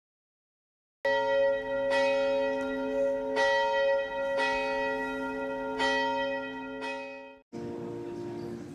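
A church bell struck about six times at uneven intervals, each stroke ringing on into the next, then cut off abruptly near the end.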